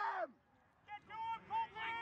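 People shouting and yelling: one shout breaks off just after the start, then a short lull, then several raised voices from about a second in.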